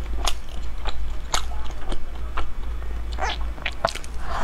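Close-miked chewing of a soft, meat-filled bread roll: many sharp wet mouth clicks, several a second, with a fresh bite into the roll near the end.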